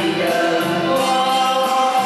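A man and a woman singing a Cantonese pop duet into microphones over a backing track, holding long notes.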